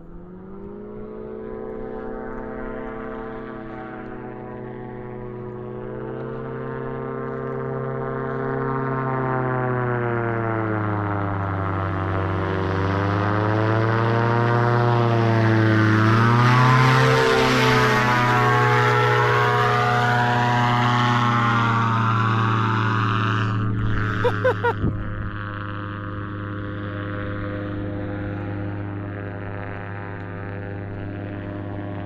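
Propeller engine of a homebuilt light-sport seaplane on pontoons flying a low pass: the drone grows louder as the plane approaches, peaks about halfway through with its pitch dropping as it goes by, then carries on more steadily as it flies away. A few quick knocks near the end.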